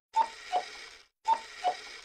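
Cartoon footstep sound effects: four short pitched taps in two quick pairs about a second apart, each pair stepping down in pitch.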